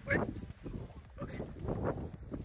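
Short wordless vocal sounds from a man: a falling cry right at the start, then rougher, breathier sounds near the end.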